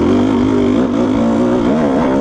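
Kawasaki KDX220 two-stroke single-cylinder dirt bike engine running under throttle on a trail ride, its revs wavering up and down as the rider works the throttle. The revs dip near the end and then climb again.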